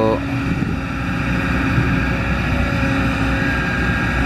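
Kobelco SK200 hydraulic excavator's diesel engine running steadily under working load as the boom and bucket dig into a soil pile: a low, even rumble with a faint steady whine above it.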